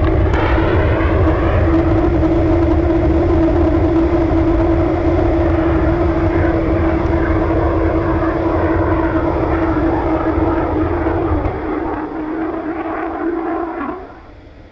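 XCOR liquid-oxygen/kerosene rocket engine firing in flight: a loud steady rush of noise with a steady hum running through it. The deep rumble weakens a couple of seconds before the end, and the sound then cuts off suddenly as the engine shuts down.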